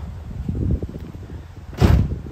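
A car door on a 1974 Dodge Challenger shutting once near the end, a single heavy thud, after a few softer knocks of handling.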